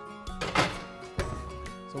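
Wall oven door shut with a single thunk about half a second in, over steady background music.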